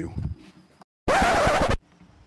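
A word of speech trails off, then after a moment of dead silence comes a sudden loud, scratchy burst of noise lasting under a second, which cuts off abruptly.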